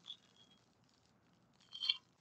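Foil booster pack wrapper crinkling as it is handled and torn open: a brief faint rustle at the start and a louder crinkle near the end.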